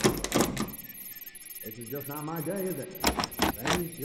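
A few sharp clicks or knocks near the start and again about three seconds in, with a stretch of voice-like sound with no clear words in between.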